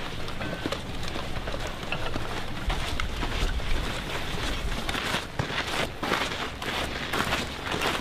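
Footsteps of a column of people walking on gravelly sand: irregular crunching steps over a steady noisy background, thicker and crisper in the second half, with a brief low rumble about three seconds in.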